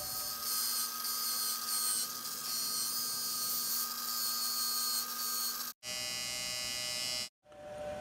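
Small handheld electric disc sander running steadily at a high pitch while sanding a glued scarf joint in a thin wooden strip. The sound breaks off abruptly twice near the end, changing in pitch between the breaks.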